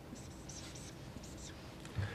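Marker writing on a whiteboard: several short, faint scratchy strokes as letters are drawn, bunched in the first second, with one more around a second and a half in.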